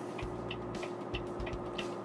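Steady drone of a Volvo tractor-trailer's diesel engine and road noise heard inside the cab while descending a grade, with a low rumble and a few faint ticks.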